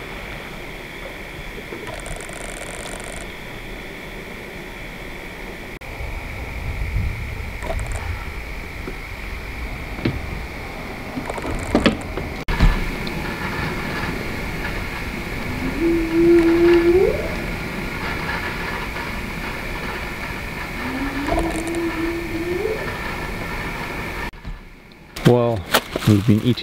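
Night insect chorus, a steady high chirring, with two long rising whooping animal calls about five seconds apart, each holding a pitch before climbing sharply at the end. A couple of sharp knocks sound around the middle.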